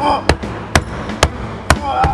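Sledgehammer blows on a layered plaster-and-board wall: about five hard strikes, roughly two a second.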